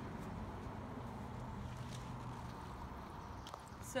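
RV black-water tank draining through a sewer hose into a ground sewer inlet: a steady, low rushing noise of waste water flowing.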